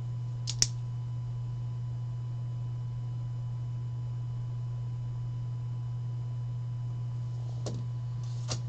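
Steady low electrical hum, with one sharp click about half a second in and a faint tick near the end.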